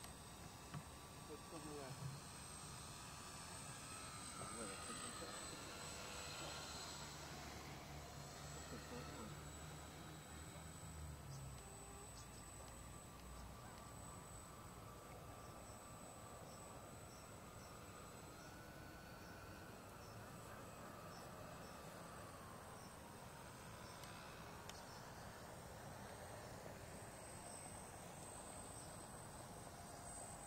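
Faint whine of a large RC scale flying boat's four electric motors as it flies past, the pitch sliding up and down with the throttle and the model's passes, over a steady high-pitched tone.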